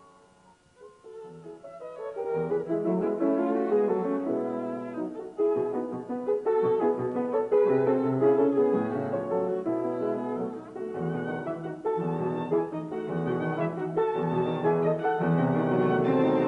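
A violin, cello and piano trio playing classical chamber music, swelling up from near silence over the first two seconds.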